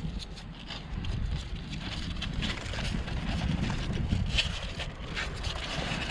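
Wind buffeting the microphone as a steady low rumble, with a few faint scratches and rustles of baby rabbits shuffling against each other in a cardboard box.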